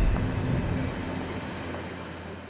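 A Lincoln SUV's engine running, beginning with a sudden low rumble that fades over the next second or two.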